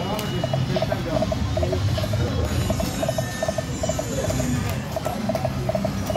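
A '40 Treasures' video slot machine playing its electronic reel-spin sounds, a regular repeating pattern of short tones, over a steady low hum.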